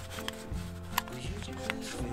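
Background music with steady sustained tones, over which a few sharp plastic clicks sound near the start, about a second in and near the end as a Mavic 2 Pro drone battery is pushed and seated into its charging hub.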